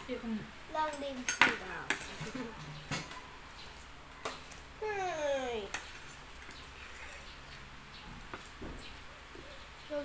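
Spoon and fork clinking and scraping on a plate of noodles, in scattered sharp clicks that are thickest in the first two seconds. A short falling voice-like sound comes about five seconds in.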